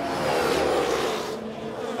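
Two 2021 Formula 1 cars, a McLaren and a Red Bull, with turbocharged V6 hybrid engines going by as they power out of a corner, their buzzing engine note rising in pitch. The sound eases slightly about a second and a half in.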